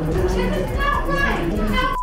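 A woman shouting angrily over crowd chatter, with music underneath.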